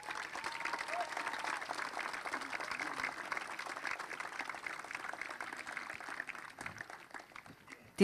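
Audience applauding with a dense patter of many hands clapping, thinning out and dying away about seven seconds in.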